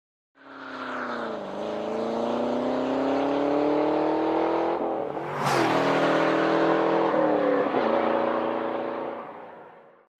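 Car engine accelerating hard, its pitch climbing and dropping back at each gear change, with a sharp crack about five and a half seconds in. It fades out near the end.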